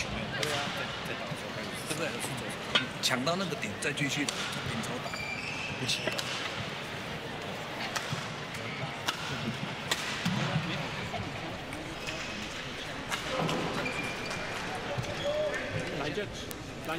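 Sharp, irregular strikes of badminton rackets on shuttlecocks from play on a neighbouring court, with occasional short squeaks, under low courtside voices.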